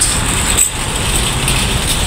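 Metal shopping cart rolling across parking-lot asphalt, a steady noisy rumble.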